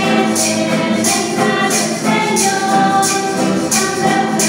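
Church choir singing a hymn to the Virgin, voices held together on sustained notes, with hand percussion shaken on a steady beat about once a second.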